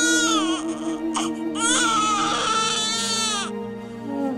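Newborn baby crying: a wail trailing off about half a second in, a brief catch a moment later, then a longer wail that stops shortly before the end.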